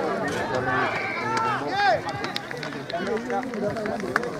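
Several voices overlapping outdoors at a rugby match, players and spectators shouting and calling, louder in the first half, with a few short sharp clicks later on.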